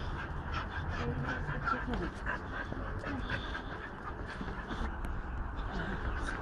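An excited dog panting and whimpering, over scuffling footsteps and rustling as the dogs are led across the yard.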